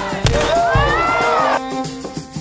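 A single shotgun blast about a quarter second in, firing the start of a 100-mile race, followed by the crowd cheering and whooping for about a second and a half, over background music.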